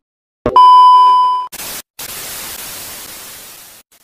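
TV test-card sound effect: a brief click, then a loud, steady high-pitched colour-bar test tone lasting about a second, cut off by the hiss of television static that fades gradually, with one short break in it.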